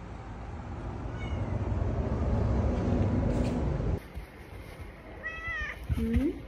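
An orange-and-white domestic cat meowing: a faint short meow about a second in, then a clear drawn-out meow shortly before the end, with another starting just as it ends. Under the first part a low rumble grows louder and then cuts off suddenly about four seconds in.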